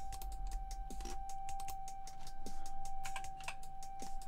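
Computer mouse and keyboard keys clicking in quick, irregular succession as mesh faces are selected and deleted. A faint steady high tone runs beneath.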